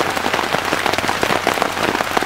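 Heavy storm rain falling on a tent's fabric, heard from inside the tent: a dense, steady patter of countless drop impacts.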